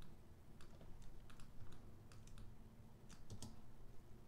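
Faint, irregular clicking and tapping of a computer keyboard and mouse.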